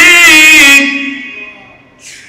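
A man's voice chanting a long held note of a prayer line through a microphone, the pitch wavering in vibrato. It stops just under a second in and trails away in echo.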